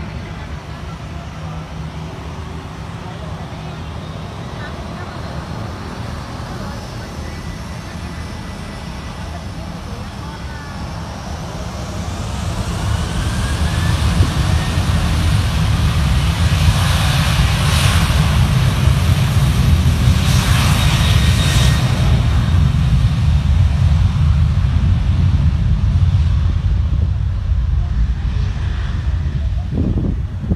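Twin-engine narrow-body jet airliner on its takeoff roll. Its jet engines run up with a rising whine, and the low rumble swells about twelve seconds in to a loud, steady level. The rumble eases off near the end as the aircraft moves away down the runway.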